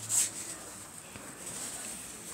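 A brief rustling brush close to the microphone just after the start, as a hand handles things right at the camera, then only faint hiss.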